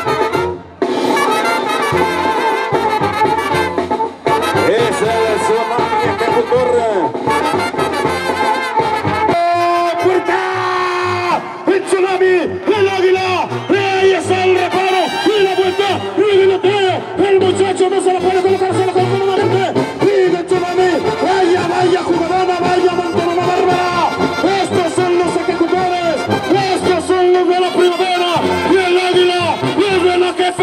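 Brass-band music led by trumpets and trombones, playing continuously.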